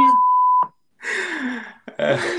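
A steady, single-pitch censor bleep, about half a second long, cuts off a spoken word. About a second later comes a short burst of laughter.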